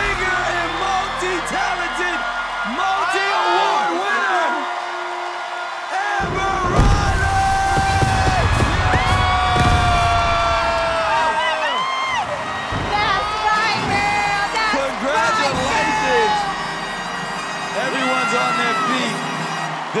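Show music with a singing voice over a cheering, whooping studio audience. About six seconds in, a sudden deep burst of sound comes in as stage flame jets fire, and it carries on for several seconds.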